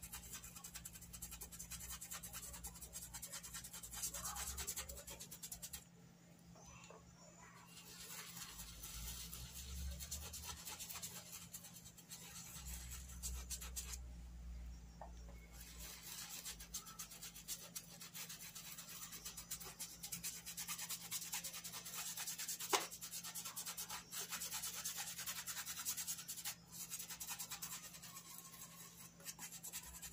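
Paintbrush scrubbing paint into cotton fabric in small circular strokes: a faint, continuous scratchy rubbing that stops twice for a second or two, with a single sharp tick about two-thirds of the way through.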